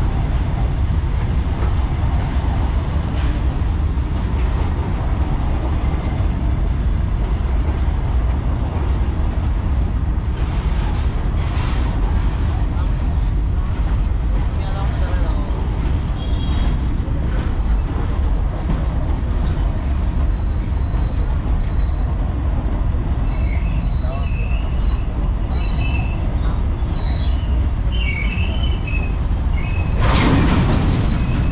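Long freight train rolling past at a level crossing: a steady heavy rumble of wagon wheels on the rails with scattered clicks. Brief high-pitched squeals come in over the last ten seconds or so.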